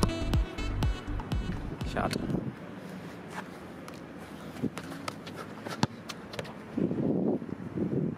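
Footsteps on artificial turf and handling noise from a camera carried while moving, with a few sharp thuds scattered through. Background music fades out in the first second or so.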